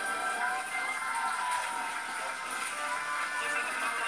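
Music playing from a television, with sustained melodic notes.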